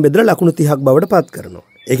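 A man speaking Sinhala in a lecturing tone, with a short pause in his speech shortly before the end.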